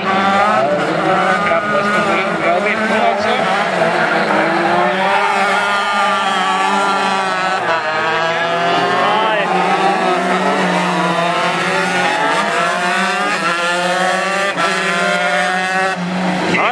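Several 125-class crosskart engines racing, their pitch climbing and dropping as they rev through the corners, over a steady low drone.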